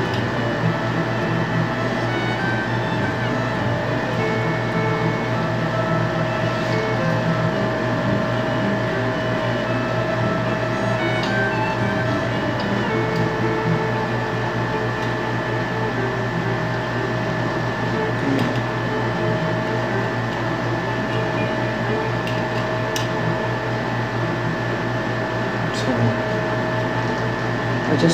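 Background music playing steadily, with a constant hum held under it and a few faint clicks.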